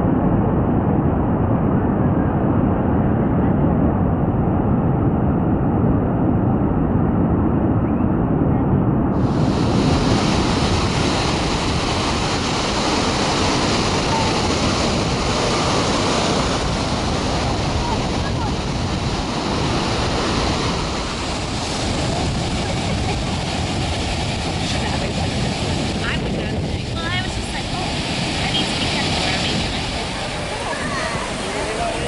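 Surf breaking on a beach with wind buffeting the microphone: a steady rushing noise, rough and heavy in the low end at first. About nine seconds in, it turns brighter and hissier.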